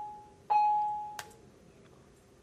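A single-pitched, bell-like chime that starts suddenly about half a second in and rings away over about a second, with the fading tail of an identical chime at the start. A sharp click comes just as it dies away.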